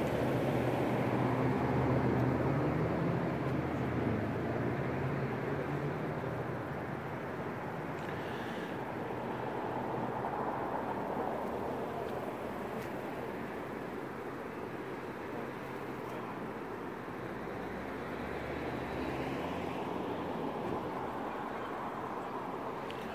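Steady vehicle and traffic noise, with a low engine hum that is strongest in the first few seconds and then fades.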